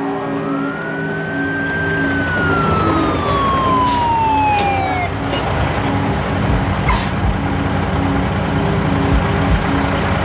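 An emergency siren gives one wail: its pitch rises over about the first second, holds, then falls slowly until about halfway through. It plays over a steady, tense music drone, with some low rumbles in the second half.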